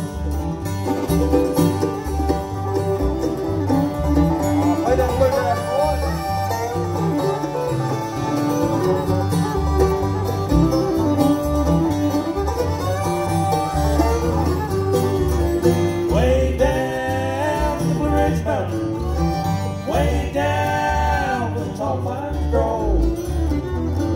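Live acoustic bluegrass band playing an instrumental break between verses, with fiddle, banjo, mandolin, acoustic guitar and upright bass. The fiddle carries the lead with sliding notes over a steady bass and guitar rhythm.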